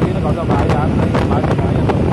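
Wind buffeting the microphone of a moving motorcycle, with its engine running underneath as a steady rumble. A person talks over it.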